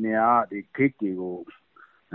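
Speech over a telephone call: a voice talking, breaking off about a second and a half in.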